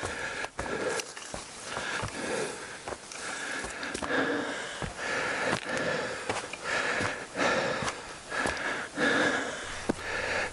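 A hiker breathing hard and in a steady rhythm, about one breath a second, while climbing a steep trail, close to a head-worn camera microphone. Footsteps on the dirt path make short sharp clicks between the breaths.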